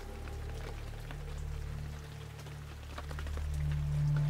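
Rain sound effect: scattered small drop ticks over a faint hiss, laid over a low, sustained background music drone.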